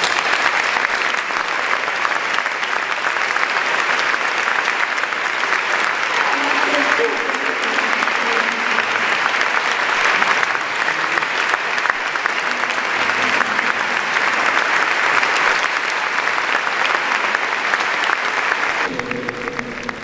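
Sustained applause from a large seated audience, many hands clapping, dying down near the end.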